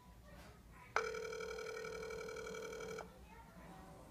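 Ringback tone of an outgoing call played through a smartphone's speakerphone: one steady two-second ring starting about a second in, the call still ringing unanswered.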